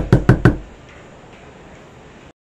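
Knuckles knocking on a door: a quick run of sharp raps, about six a second, that stops about half a second in.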